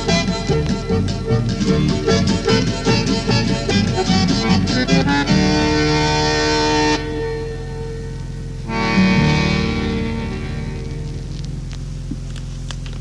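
Recorded chamamé led by accordion, coming to its end: rhythmic playing gives way about five seconds in to held chords, then a last chord about nine seconds in that fades away.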